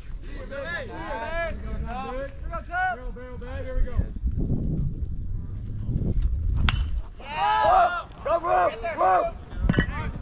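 Baseball players shouting and chanting from the field and dugout, in two stretches of wordless yelling. Between them, low wind rumble on the microphone, then a single sharp crack as the pitch reaches the plate.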